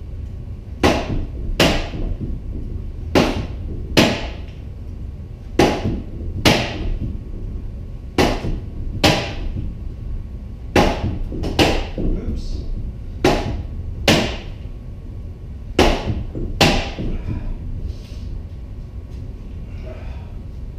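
SCA heavy-combat sword, a rattan weapon, striking a pell (a wrapped practice post) in pairs of sharp whacks under a second apart, one pair every two and a half seconds, seven pairs in all. A low steady hum runs underneath.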